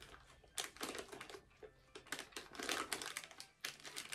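Mouth sounds of chewing a soft, chewy fruit toffee: irregular small wet clicks and smacks.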